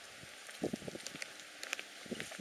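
Footsteps of a person walking, two steps about a second apart over a faint steady hiss.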